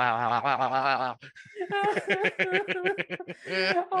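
People laughing hard: a long wavering vocal sound for about the first second, then fast, pulsing laughter.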